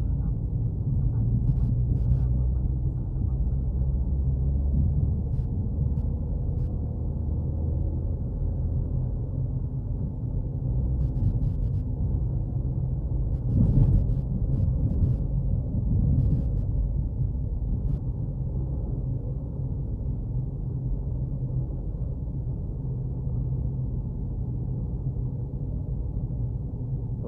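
Steady low rumble of a car's engine and tyres on the road, heard from inside the cabin while driving, swelling briefly about halfway through.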